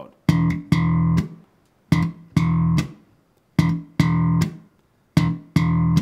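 Open E string slapped on an Enfield Lionheart electric bass: a short staccato note, cut off by lifting and dropping the fretting-hand fingers, then a full eighth note. The pair is played four times, each note starting with a sharp slap click.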